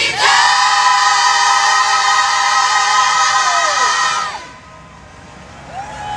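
Gospel choir singing a long held chord for about four seconds, the voices sliding down in pitch as it ends, followed by a quieter stretch.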